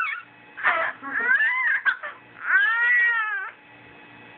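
A 4.5-month-old baby screaming in playful high-pitched squeals, about three of them. The last is the longest and rises then falls in pitch. This is an infant's vocal play, trying out her voice, not crying.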